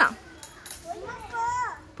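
A young girl's voice: the end of a loud word right at the start, then a drawn-out, high-pitched sung-out word about a second in.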